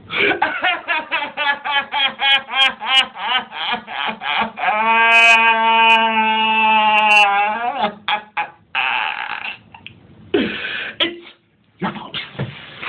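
A person laughing hard in a rapid string of pulses for about four seconds, then one long held vocal wail lasting about three seconds that drops in pitch as it ends, followed by breathy laughing.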